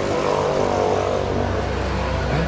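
A motor vehicle engine running steadily with a low hum.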